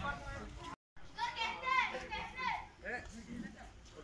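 People talking, the voices sounding like lively or overlapping chatter, with a sudden total dropout to silence for a moment just under a second in, like an edit cut.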